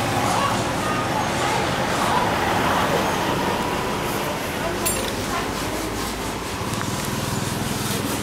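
Steady street background of traffic noise with faint, indistinct voices, and a short click about five seconds in.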